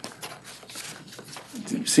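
Papers being shuffled and handled, a run of faint quick rustles and small clicks; a man starts talking near the end.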